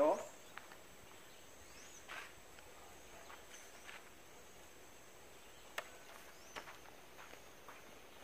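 Faint outdoor ambience with light footsteps on a dirt range and a few small knocks and clicks as a steel target plate on its stand is adjusted by hand; the sharpest click comes about six seconds in.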